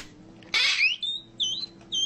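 A man shrieking in a very high pitch, in a run of short cries whose pitch jumps up and down, the first one rising.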